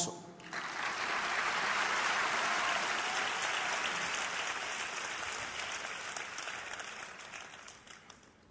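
Large audience applauding. The clapping starts about half a second in, is fullest after a couple of seconds, then slowly dies away toward the end.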